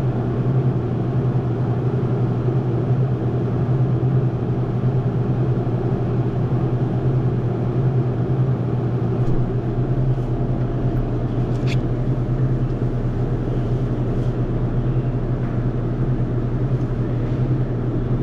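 Steady mechanical hum of a refrigerated grocery display case's fan and motor, picked up close from inside the case. A deeper hum joins about halfway through.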